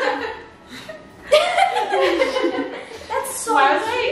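Women laughing and chattering excitedly, with a short lull about half a second in before the laughter and talk pick up again.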